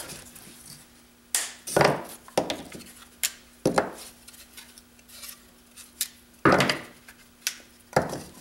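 Bandsawn wood blank being broken apart by hand: the small uncut tags left by the saw snap and the waste pieces crack and knock loose. About five sharp cracks come spread over several seconds.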